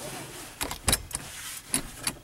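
A handful of sharp knocks and clicks inside a car cabin, the loudest about a second in: handling noise from things being moved and set in place.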